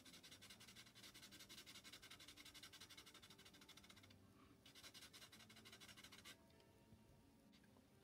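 Faint scratching of a Derwent tinted charcoal pencil sweeping over black drawing paper in quick, even strokes, with a short break about four seconds in; the strokes stop a little after six seconds.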